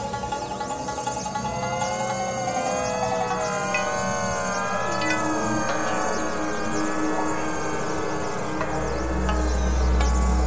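Dense layered electronic music of overlapping tracks: many synthetic tones glide up and down across one another. A steady mid tone joins about halfway through, and a loud low drone comes in near the end.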